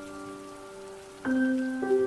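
Calm solo piano music: held notes fade away through the first second, then new notes are struck about a second and a quarter in and again near the end. A faint steady hiss lies underneath.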